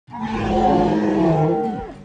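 Dinosaur roar sound effect: one long call, its pitch sliding down as it fades near the end.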